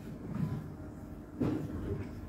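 Low rumbling handling noise from a handheld microphone being moved, with a bump about one and a half seconds in as it is raised to the mouth.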